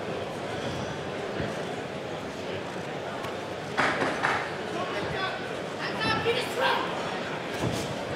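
Crowd at a boxing fight: a steady murmur, a sudden surge of shouting about four seconds in, then single voices yelling near the end.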